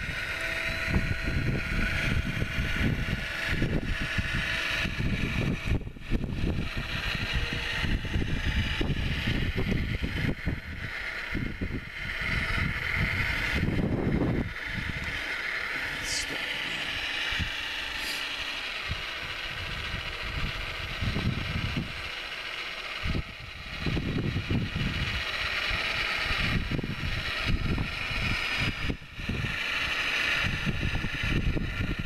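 Radio-controlled Wedico Cat 966 model wheel loader's hydraulic pump and drive motors whining steadily as it pushes snow, with gusty wind buffeting the microphone.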